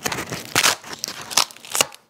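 Painted mixed media art journal pages peeling apart as they are turned, with several sharp crackles, the loudest about half a second in. It is the sound of sticky page surfaces pulling off one another; the pages are sticking, not tearing.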